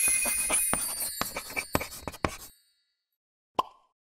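Title-logo sound effect: a bright, shimmering sparkle with a string of short pops that thin out and stop about two and a half seconds in. Near the end comes a single short ping.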